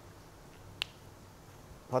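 One short, sharp plastic click about a second in, over quiet room tone: a whiteboard marker's cap snapped shut.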